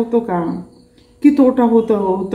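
A woman speaking, with a short pause of about half a second near the middle. A faint steady high-pitched tone runs underneath.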